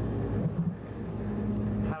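A steady low electrical hum, the kind carried on an old VHS audio track, in a pause in a room of seated people, with a man starting to speak at the very end.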